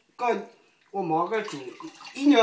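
Hands swishing and rubbing rice in a pot of water to wash it, with water sloshing, under short bursts of a woman's voice talking.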